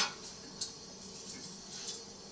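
Cutlery clicking faintly: a sharp click right at the start and a smaller one about half a second later, over a low steady hum.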